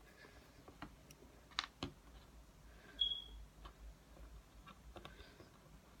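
Hands rolling modelling clay on a tabletop: faint scattered clicks and taps, with two sharper clicks about a second and a half in and a brief high squeak about three seconds in.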